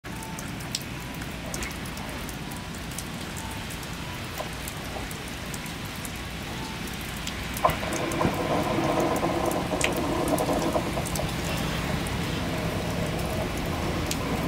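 Steady rain with scattered drips on the platform roof. About halfway through, a Kotoden 1200-series electric train pulls in, and its motors and wheels add a louder steady hum that lasts to the end.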